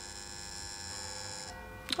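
An electric buzzer sounding once: a steady, unbroken buzz that cuts off about one and a half seconds in, signalling that the time is up.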